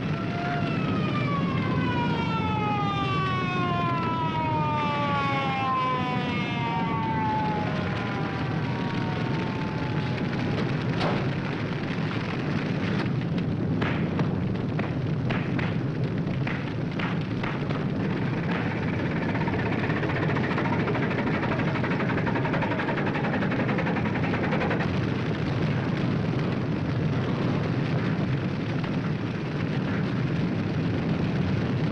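Forest fire burning with a steady rushing noise throughout, broken by a run of sharp cracks and snaps in the middle. Over the first ten seconds a pitched tone slides slowly downward on top of it.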